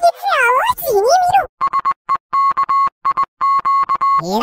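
An audio-effects-processed cartoon voice gliding up and down in pitch. About a second and a half in it gives way to a high, steady electronic beep, chopped on and off in quick, irregular stutters.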